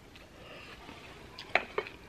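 Quiet eating sounds over a bowl of noodles: soft mouth sounds, then a few short sharp clicks about one and a half seconds in as the chopsticks and fork work in the bowl.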